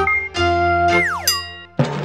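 Short cartoonish logo jingle: held electronic notes, then a tone sliding steeply downward about a second in, and a fresh chord with a warbling tone near the end.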